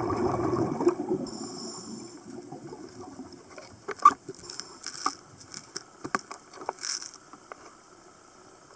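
Scuba regulator exhaust: a burst of exhaled bubbles rushing out and fading over the first second or two, heard through an underwater camera housing. After it come scattered sharp clicks and pops.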